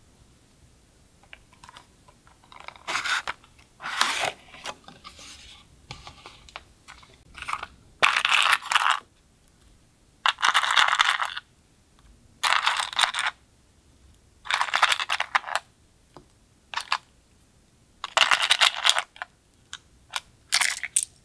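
Slime being pressed and squished by hand, with bursts of crackling and popping every second or two.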